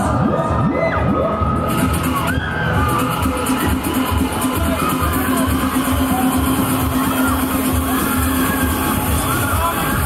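Loud fairground ride music with a steady beat, with riders' screams and cheers over it.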